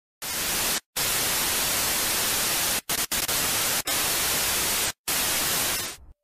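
Television static sound effect: a steady hiss of white noise that starts a moment in and drops out for short silent gaps five times, about a second in, twice around three seconds, near four seconds and near five seconds, before cutting off just before the end.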